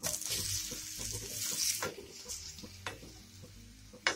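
Ripe banana slices sizzling as they slide into hot ghee in a frying pan, with a few light clicks as the slices and spatula knock against pan and plate. The sizzle is loudest in the first two seconds, then dies down.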